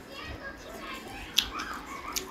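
A child's voice making brief sounds, with one sharp click about one and a half seconds in.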